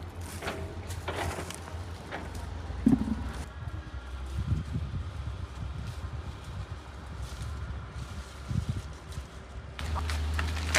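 Persimmon tree branches and leaves rustling as fruit is picked, with one sharp knock about three seconds in and a steady low rumble underneath.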